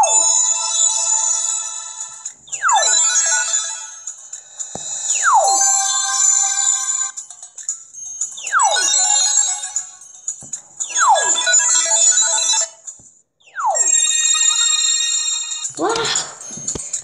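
Electronic sound effects from a children's story app, repeating about every three seconds: each one a quick falling whistle followed by a bright, sparkly ringing chime.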